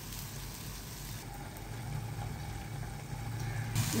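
Broad beans cooking in oil in an aluminium pan with a faint sizzle, over a steady low hum.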